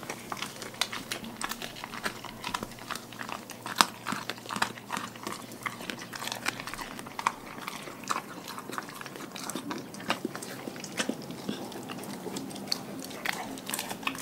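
Dog chewing and crunching a whole raw fish, with irregular wet bites and sharp crunches, the loudest about four seconds in.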